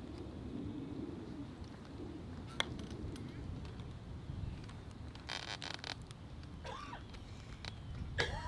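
Wind rumbling on the microphone over an open lawn, with faint distant voices. One sharp click about two and a half seconds in, and a short rustle about halfway through.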